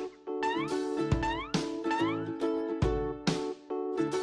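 Cheerful children's background music on plucked strings with a steady beat. Three short, squeaky rising glides sound over it, once about half a second in and twice more around the two-second mark.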